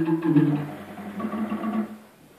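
Hand-cranked barrel organ's pipes sounding a few low held notes that step downward and fade, with a faint higher note above, then cutting off abruptly at the end.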